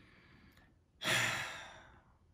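A man's long, breathy sigh, starting suddenly about a second in and fading out over nearly a second: a sigh of relief at getting through a try-not-to-laugh challenge.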